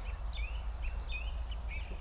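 A small bird chirping in a garden: several short high notes, some gliding up and down, over a steady low rumble.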